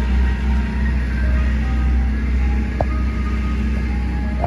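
An ice cream truck's chime music plays a simple tune of single held notes through its loudspeaker. Under it runs a steady low rumble from the stopped truck's idling engine.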